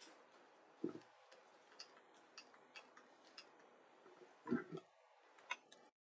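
Faint, irregular light clicks from a laptop as slides are switched, with two dull thuds of a handheld microphone being handled, about a second in and about four and a half seconds in. The sound cuts off abruptly just before the end.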